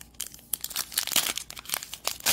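Crinkly plastic cello wrapper of a trading-card pack being torn open by hand: a dense run of sharp crackles starting about half a second in.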